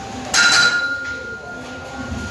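A sharp clink about a third of a second in, followed by a steady high ringing tone that holds for about two seconds before fading.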